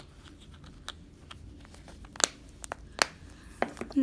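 Small clear plastic slime container being handled and its lid pressed on, making a series of short sharp plastic clicks and crinkles, the loudest a little over two seconds in.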